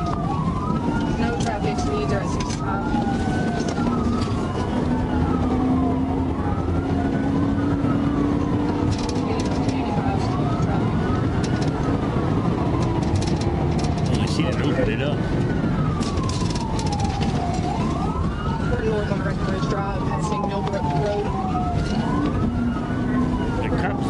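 Police car siren wailing, its pitch rising and falling in a cycle of about two seconds, over the engine and road noise of a car driving fast during a pursuit.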